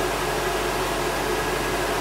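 Wall-mounted electric hot-air dryer running with a steady blowing noise and motor hum as it blows warm air through the feathers of a washed bird skin to dry them.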